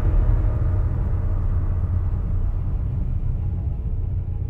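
Deep, steady low rumble from a trailer's sound design, with faint held tones above it; the brighter part slowly fades away as the rumble carries on.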